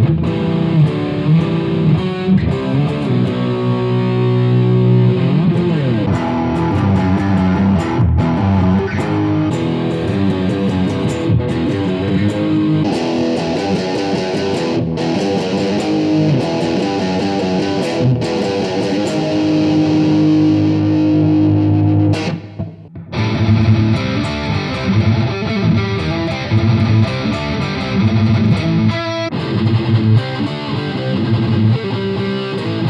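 Electric guitar (Yamaha Pacifica 311H, bridge pickup) played with a distorted metal tone through small practice amps, the Yamaha THR10 and the Boss Katana Air, in turn. A heavy classic-metal riff plays first; the tone turns brighter about halfway through. After a brief break just past two-thirds of the way in, a faster thrash-metal riff starts.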